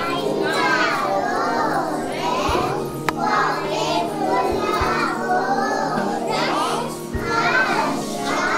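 A group of young children's voices calling out and chattering together as they play a circle game, over background music. A single sharp click about three seconds in.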